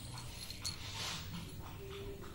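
Two kittens play-fighting on a bed: soft scuffling and rustling of the bedsheet, with a brief jingle-like tick from a collar bell.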